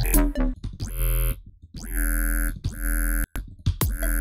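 Screechy freeform-bass synth patch from the Vital synth, built on the "clicky robot" wavetable with soft-clip distortion, multiband compression and a phaser. It plays as a looped line of held notes, cut off sharply and broken by short gaps.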